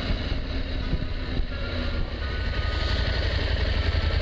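Motorcycle engine running steadily while riding at low speed, with a continuous low rumble of wind and road noise on the onboard microphone.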